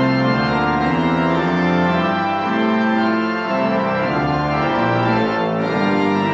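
Organ playing slow, held chords that change about once a second.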